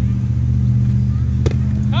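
A motor vehicle engine running steadily nearby, a low, even hum that is the loudest sound. Two sharp slaps of hands striking a volleyball, one at the start and one about a second and a half in.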